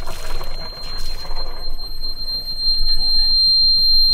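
Engine panel battery warning buzzer on a sailboat's diesel engine, sounding one steady high tone just after start-up. The owner expects it to stop in a minute. Underneath, the freshly started diesel is idling, and cooling water is splashing from the exhaust outlet during the first second or so.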